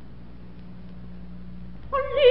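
A quiet pause in an old 1940s opera recording: a faint, low, sustained tone under steady surface hiss. Just before the end a soprano voice comes in on a loud held note with a wavering pitch.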